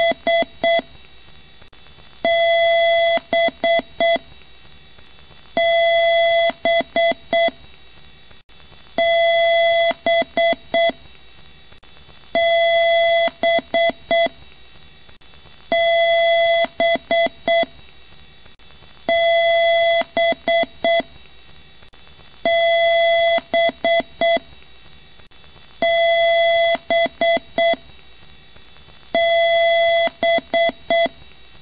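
A PC's BIOS speaker sounding a beep code: one long beep followed by a few short beeps, repeating about every three and a half seconds. A repeating long-and-short pattern like this is how a BIOS signals a hardware fault during the power-on self-test.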